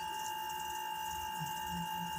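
A pause in speech filled by a steady whine of a few fixed high tones over faint low background noise.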